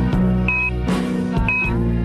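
Instrumental song accompaniment with a steady low bass and held notes, and no voice singing over it. A short high beep sounds about once a second, twice in all.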